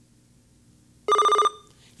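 Quiz-show buzzer: a short, loud electronic warbling tone lasting under half a second, about a second in. It signals that a contestant has buzzed in to answer.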